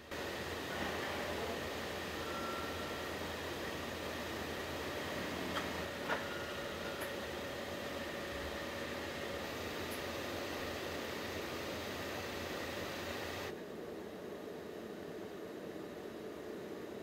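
Steady hum and noise of assembly-line machinery, with faint steady tones and a couple of sharp clicks about six seconds in. About two and a half seconds before the end it drops abruptly to a quieter, steady hiss.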